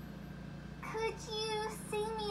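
A child's voice sings a couple of short held notes, starting about a second in, over a steady low hum. The voice comes from a cartoon soundtrack played through a television speaker.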